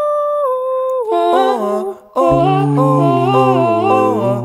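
A six-voice a cappella ensemble singing without words. A single high voice holds a note and steps down, other voices join about a second in, and after a brief break just before the two-second mark, low voices enter under a full held chord.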